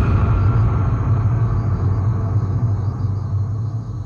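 Low, sustained rumbling drone from a dramatic background score, with faint high held tones above it, easing slightly toward the end.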